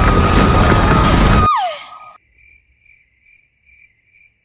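Loud rumbling, crashing disaster-scene noise with a steady high tone over it, cut off about a second and a half in by a falling pitch glide. Then a sudden quiet with faint, evenly spaced cricket chirps, the comic 'crickets' sound effect.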